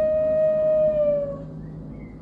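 Custom-made bansuri holding one long, steady note that dips slightly in pitch and fades out about one and a half seconds in.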